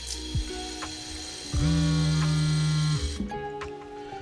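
Soft background music, with a mobile phone vibrating: one steady low buzz lasting about a second and a half, cutting off suddenly, an incoming call.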